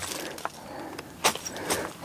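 Flat stone knocking and scraping on loose gravel while breaking apart dried bighorn sheep droppings: a low rustle with a few sharp clicks, two of them in the second half.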